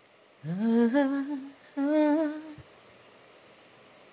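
A woman humming two short phrases with her mouth closed: the first slides up into a held note about half a second in, and the second, a held note, ends a little after two seconds.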